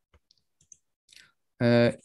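A few faint, short clicks as the presentation slide is advanced, then a man's voice starts speaking near the end.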